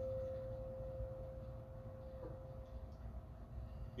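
Singing bowl ringing out with one steady tone that slowly fades; a little over two seconds in there is a faint knock and the ring dies away.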